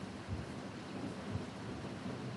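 Steady hiss of room noise in a lecture hall, with a couple of faint low thumps and no speech.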